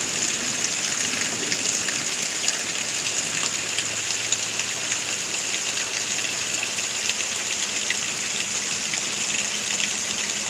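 Steady thunderstorm rain falling, a constant hiss with scattered drops ticking close by.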